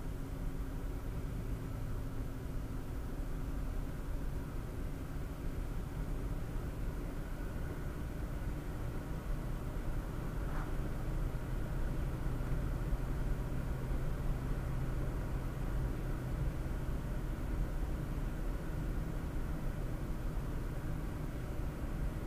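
Steady road and engine noise of a car cruising at highway speed, heard from inside the cabin. A low hum steps up slightly in pitch about halfway through as the car speeds up from about 94 to 110 km/h. There is a brief tick about ten seconds in.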